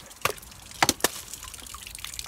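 A tossed plastic water bottle with water in it knocking as it strikes and drops to the icy ground: one lighter knock, then two sharp knocks close together about a second in.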